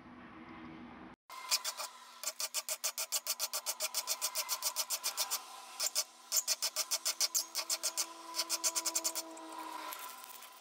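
Hand file drawn in quick, even strokes, about four or five a second, across the edge of a steel gage blank held in a bench vise, filing it down to the scribed layout lines. The strokes break off briefly about halfway through and stop shortly before the end.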